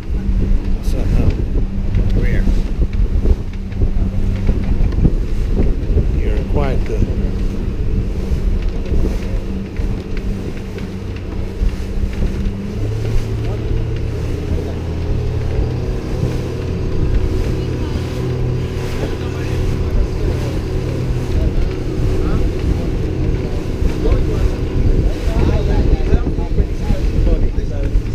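Boat engine running steadily, its note shifting lower about halfway through, with wind buffeting the microphone.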